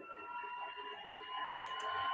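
Faint, steady electronic whine made of several high tones over a light hiss, growing slightly louder near the end.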